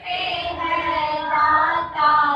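A group of women singing a Hindi devotional prayer together in unison, with sustained notes that glide in pitch.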